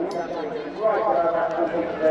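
Indistinct chatter: several spectators' voices talking over one another.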